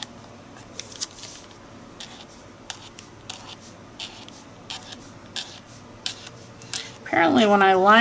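Paint marker tip scratching across a paper journal page in short, irregular strokes, about one or two a second.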